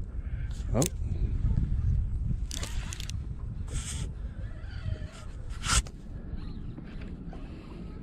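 Wind rumbling on the microphone, with a few knocks and scrapes from rod and reel handling during the fight with a hooked fish.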